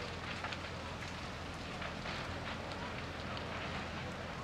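Large burning shed crackling and popping, with many small sharp cracks over a steady rushing noise.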